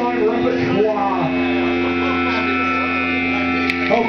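Steady electric hum and drone from a live band's stage amplifiers between songs, with people talking over it, mostly in the first second and again near the end.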